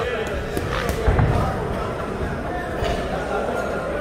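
Crowd chatter and shouts around a boxing ring in a large hall, with a few sharp slaps of boxing-glove punches landing.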